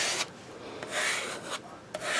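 A squeegee dragged across a silkscreen, rasping as it pushes glass enamel paste through the mesh, in a few separate strokes.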